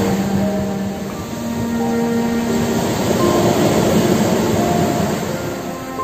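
Slow music of long, held notes over a steady wash of ocean surf that swells and eases.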